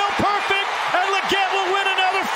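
Excited television play-by-play commentary shouted at a high pitch over a stadium crowd cheering a long touchdown catch.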